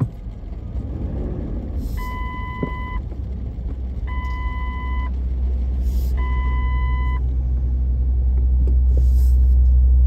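City street traffic with a low engine rumble that grows steadily louder toward the end. Over it come three long, even beeps about two seconds apart, the pattern of a vehicle's reversing alarm.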